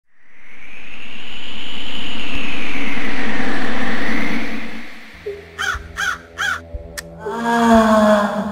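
A loud swell of wind-like rushing noise with a slowly wavering whistle fades out after about five seconds. Then a raven caws three times in quick succession over a low drone, and a short gasped 'ah' follows near the end.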